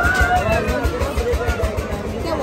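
Fairground din: music playing over the chatter of a crowd, with a low rumble underneath.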